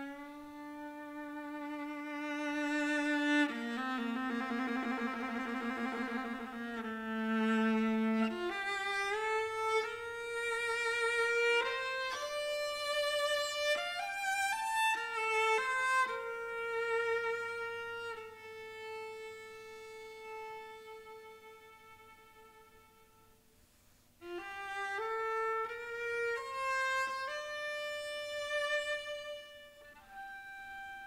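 Solo viola playing a slow, single melodic line with wide vibrato. The sound fades almost to nothing around twenty seconds in, and a new phrase enters suddenly about four seconds later.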